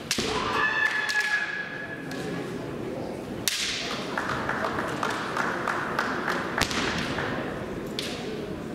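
Sharp cracks and thuds echoing around a large wooden-floored hall, typical of bamboo shinai strikes and stamping feet in kendo bouts, with three stand-out cracks: right at the start, a few seconds in and near the end.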